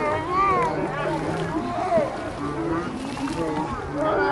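Several children's voices shouting and chattering over one another, with no single clear speaker.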